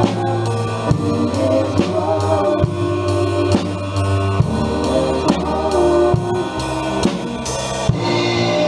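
Acoustic drum kit played live in a worship band song, a steady beat of hits about twice a second over the band's sustained chords and singing.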